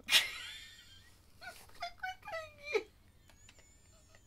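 A man laughing: a sudden loud burst right at the start that fades over about a second, then short voiced laughs and vocal sounds about a second and a half in.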